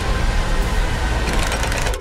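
Action-film trailer sound effects: a loud, dense low rumble, with a fast rattle of clicks near the end.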